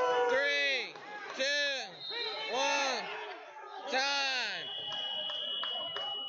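People shouting at the bout in four long, drawn-out yells that rise and fall in pitch. Near the end a steady high-pitched tone sounds for about two seconds as the period's clock runs out.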